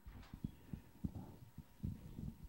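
Handling noise from a handheld microphone being passed to the next questioner: a handful of soft, irregular low thumps and bumps.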